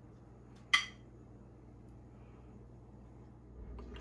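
A single sharp clink of metal kitchen tongs against a dish, about three-quarters of a second in, ringing briefly; otherwise only a faint low hum.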